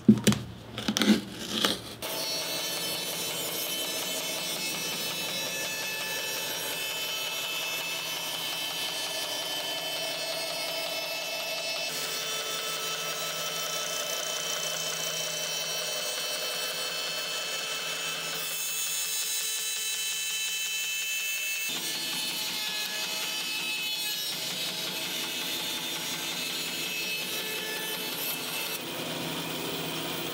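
A hand tool scrapes and clicks inside a leather boot for about two seconds. Then a band saw runs steadily as it cuts lengthwise through the Goodyear-welted bison-leather work boot and its rubber sole.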